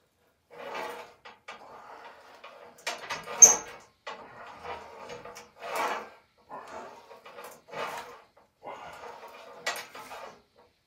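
Lat pulldown machine worked through repeated reps: the cable rubs over its pulleys and the weight stack clanks, in swells about a second apart. A sharp metallic clank about three and a half seconds in is the loudest sound, with another near the end.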